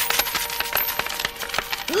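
Cartoon sound effect of a pile of coins pouring out of an emptied safe: a dense, rapid run of metallic clinks.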